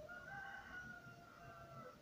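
A rooster crowing faintly: one long call of just under two seconds, held fairly level and dropping in pitch at the end.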